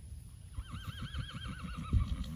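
A horse whinnying: one long whinny that starts about half a second in, its pitch quavering quickly up and down, and fades out near the end.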